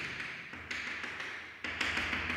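Chalk writing on a blackboard: scratchy strokes and taps, with fresh strokes starting about two-thirds of a second in and again near the end.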